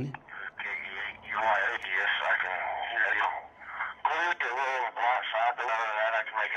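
Another operator's voice replying over FM radio through a Yaesu FT5D handheld's speaker. It is narrow, tinny radio audio with no deep tones, answering a call for an audio check.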